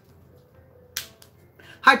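A single sharp click about a second in, followed by a couple of fainter ticks, over a faint steady room hum; a woman starts speaking near the end.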